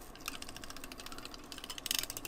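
Glue tape runner drawn along a paper strip, its gears giving a fast run of clicks that starts a moment in and gets louder near the end.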